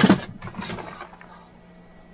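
Handling noise as a plastic food packet is picked up: a sharp sound right at the start and a few short rustles and knocks within the first second, then quiet with a faint steady hum.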